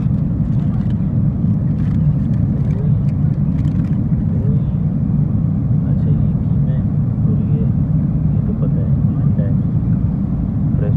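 Airliner cabin noise in flight: a loud, steady low roar of engines and rushing air, with faint voices of other passengers underneath.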